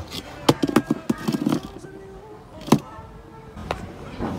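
Handling noise: a run of sharp clicks and knocks in the first half, then one louder knock a little under three seconds in, as a steel combination wrench is handled and put down on concrete.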